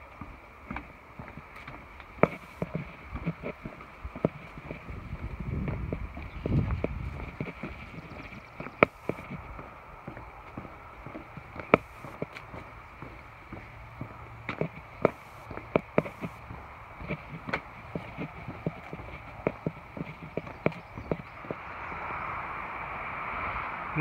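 Footsteps knocking on the planks of a wooden boardwalk, a string of irregular hollow taps about one or two a second. A gust of wind rumbles on the microphone about five to seven seconds in.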